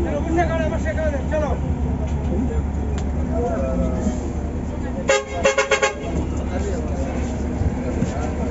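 A vehicle horn sounding a quick run of about five short toots about five seconds in, over the steady engine rumble of a bus heard from inside its cab.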